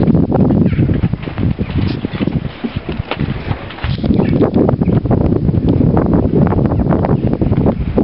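Wind buffeting an outdoor camera microphone in a dense low rumble, broken by many short knocks and scuffs from the handheld camera being carried at walking pace.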